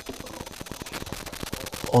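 A rapid, irregular crackle of sharp clicks, with a man's voice starting up right at the end.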